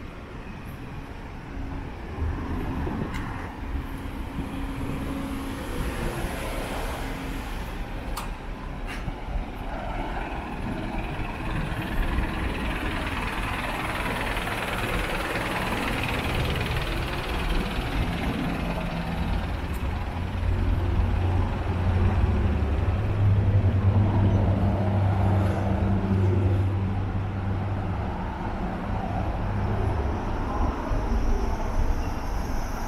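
Road traffic: vehicles passing along a street, with a heavy vehicle's engine drone growing louder in the second half.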